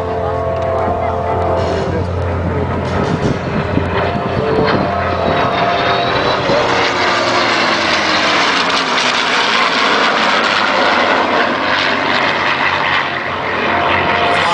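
An F-16 jet and a P-51 Mustang flying past together in formation. A low engine drone in the first seconds gives way to broad jet noise that builds from about six seconds in and is loudest a little past the middle.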